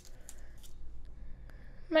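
Faint rustling and light clicks of a small DIP chip's pins being worked out of black anti-static foam by hand.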